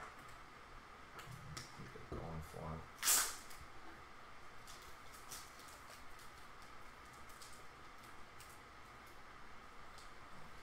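Small clicks and taps of clear plastic card holders being handled, over a faint steady hum, with a brief low murmur about two seconds in and one short loud hiss about three seconds in.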